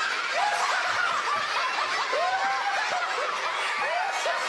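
A studio audience of young children laughing together: many high voices overlapping in continuous laughter that holds steady throughout.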